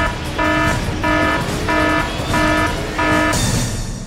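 A game-show suspense sound effect: a run of short, identical electronic beeps, about three every two seconds, over a background music bed, stopping shortly before the end. It is a countdown cue while a result is about to be revealed.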